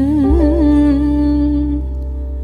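Tamil Carnatic-style song: a singer holds one long note, wavering quickly at first and then steady, over a steady low drone, and stops just before the end.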